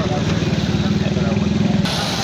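A small motor vehicle engine running steadily close by, a low even drone with a fast regular firing beat; the sound changes abruptly just before the end.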